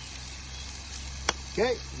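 Tomatoes, garlic and olive oil sizzling steadily in a frying pan on a camp stove, with a single sharp click a little past the middle.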